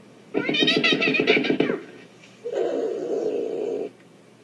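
A domestic cat giving a long, wavering meow for over a second, then, after a short pause, a second, rougher drawn-out cry.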